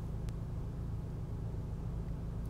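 A pause in speech filled with a steady low hum and faint hiss of background noise, with one tiny click about a quarter second in.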